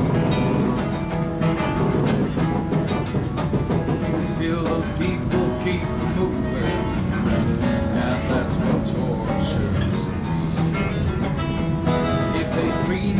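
Two acoustic guitars playing an instrumental break in a country song, strummed and picked in a steady rhythm, over the low rumble of a moving passenger train.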